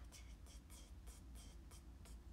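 Near silence: a steady low hum with faint, short hissy sounds, about two or three a second.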